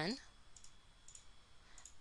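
A few faint computer mouse clicks over quiet room tone, after a last spoken word at the very start.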